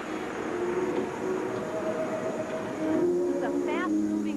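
Large arena crowd making a steady noise of cheering, with some long held shouts standing out and rising calls near the end.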